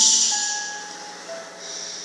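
The preacher's amplified voice dying away in the church hall through the sound system, leaving a fading hiss and a few faint, thin, steady tones that step lower in pitch one after another.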